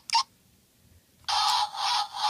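Electronic car sound effect from a B. Toys Fun Keys toy remote, played through its small built-in speaker when its first button is pressed. It starts suddenly a little past the middle and carries on, thin-sounding with no low end.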